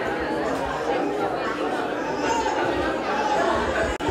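Indistinct chatter of a seated crowd of guests, many people talking at once at a steady level.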